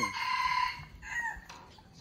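A rooster crowing: one harsh call about two-thirds of a second long, followed by a couple of short, fainter calls.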